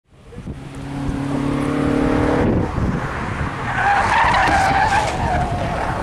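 Slalom car's engine held at steady revs, cutting off about two and a half seconds in, then the tyres squeal hard through a corner for about two seconds.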